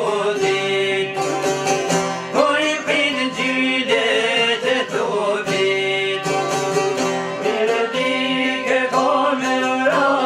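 Albanian folk song: a violin and a long-necked plucked lute played together, with a man singing over them.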